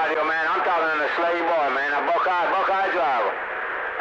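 A voice coming in over a CB radio's speaker, narrow and radio-filtered, with the words hard to make out. The incoming signal is strong: the set's meter is lit almost to the top.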